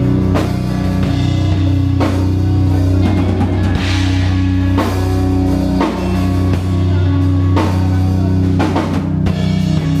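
Live hardcore band playing loud: electric guitars and bass hold low sustained chords over a drum kit, with drum hits every second or so.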